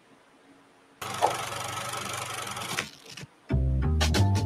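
A steady mechanical whirring sound effect, like a film projector running, lasts just under two seconds after a second of near silence. Music with a heavy bass line comes in near the end.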